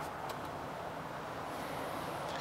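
Steady outdoor background noise of distant traffic, with two faint clicks in the first third of a second.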